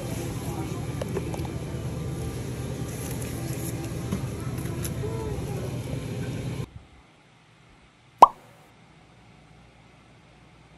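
Coffee-shop background: a steady hum with indistinct voices and clatter, which cuts off abruptly about seven seconds in. One short, loud pop dropping in pitch follows about a second later.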